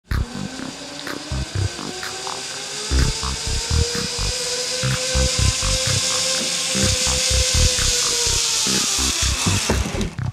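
Zip line trolley pulleys running along a steel cable: a whine that rises in pitch as the rider gathers speed, holds steady, then falls away just before the end as he slows at the platform. Under it runs a hiss and a quick, uneven series of low thumps.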